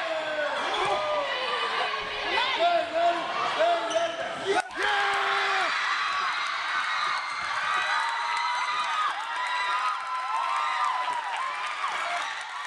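Spectators and players shouting, yelling and cheering in an echoing school gymnasium during a volleyball rally, with sharp knocks of the ball being played. The cheering is for the match-winning point.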